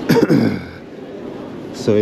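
A man's voice: a short vocal sound with falling pitch at the start, like a throat-clear or grunt, then he starts to speak near the end, over quieter steady background noise.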